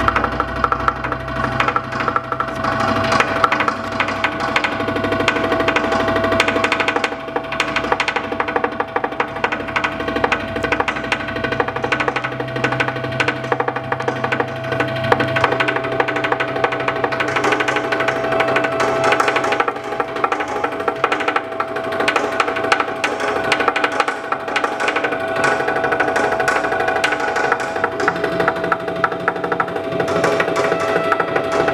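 Experimental chamber ensemble music played live: one steady tone held throughout over a dense texture of fast, fine clicks and scrapes with layered sustained pitches.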